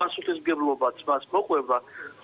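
A man speaking Georgian over a telephone line, the voice thin and narrow as phone audio is.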